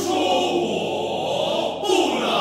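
Choir singing loudly and full-voiced, with a brief break near the end before the voices come in again.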